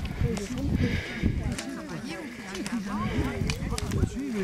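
Several people talking at once while walking, with sharp clicks of trekking poles tapping on the tarmac.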